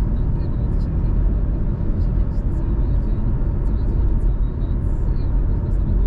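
Steady in-cabin running noise of a 2005 Honda CR-V with a 2.0 16V petrol engine, driving at an even pace: a constant low engine drone mixed with road noise, without revving up or down.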